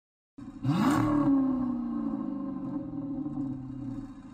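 Intro sound effect: a whoosh with a pitched rev that climbs fast and peaks about a second in, then slowly winds down in pitch.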